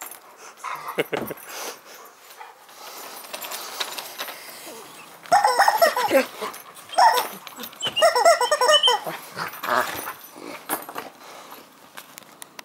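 A shepherd-type dog whining, in a few bursts of high, wavering cries about five to nine seconds in.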